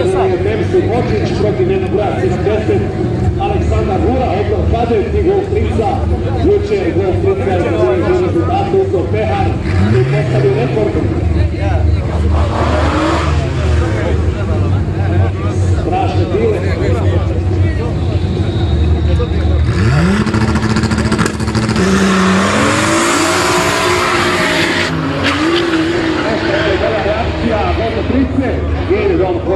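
Drag-race cars idling and revving at the start line, then launching about twenty seconds in with a few seconds of tyre squeal as the engines rev up repeatedly while the cars pull away down the strip.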